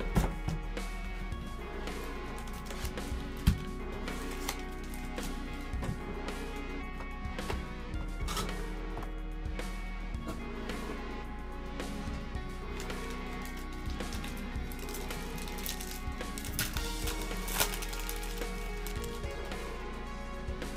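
Soft background music playing steadily, with scattered short clicks and rustles from a cardboard card box and its foil packs being handled; one sharper click comes about three and a half seconds in.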